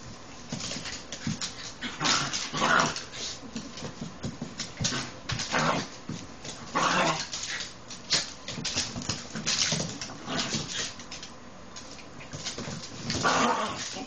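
Rat terrier puppy and adult rat terrier play-fighting, making short yips and whimpers in irregular bursts, with louder flurries every few seconds.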